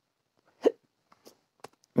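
A single brief vocal sound from a man, a short throaty blip about two-thirds of a second in, followed by a few faint clicks.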